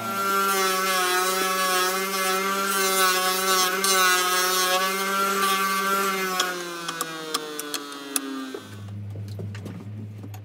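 Bench disc sander running with wood held against the abrasive disc: a steady motor hum under a high gritty hiss. Over the last few seconds the motor's pitch falls steadily as it winds down.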